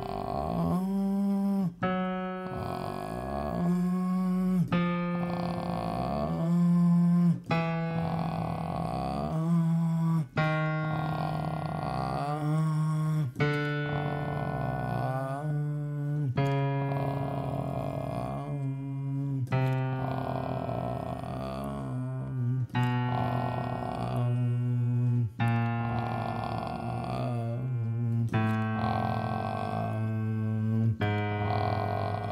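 A male voice singing a vocal-fry low-register exercise: held open-vowel notes, each started from a relaxed creaky fry, over piano-keyboard chords. Each note is a step lower than the one before, going down into the low register.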